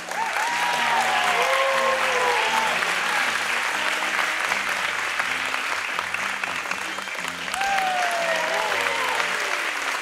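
Audience applauding, starting suddenly and loudly as a song ends, with a few voices calling out over the clapping and soft music carrying on underneath.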